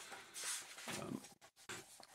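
Pages of a thick paperback book being turned by hand: a short papery rustle about half a second in, with quieter page handling after it.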